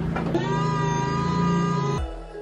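Engine-driven work equipment running steadily: a low engine drone with a steady high-pitched whine that sets in about half a second in.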